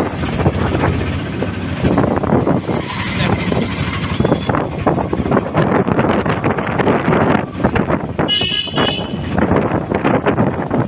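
Auto-rickshaw ride: its small engine running with road and wind noise on the microphone, and a horn honking briefly about eight seconds in.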